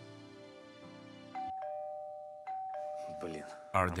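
Soft background music stops about a second in, followed by a two-tone doorbell chime rung twice: ding-dong, ding-dong, each a higher note falling to a lower one.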